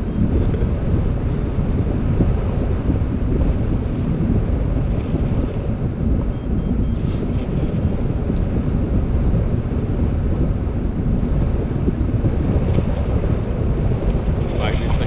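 Steady, loud wind rumble on the action camera's microphone from the airflow of a tandem paraglider in flight.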